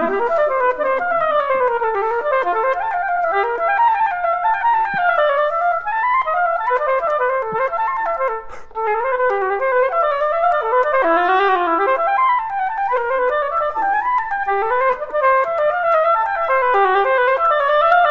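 Solo oboe playing a fast running passage, its notes sweeping rapidly up and down in runs, with a brief break for breath about halfway through.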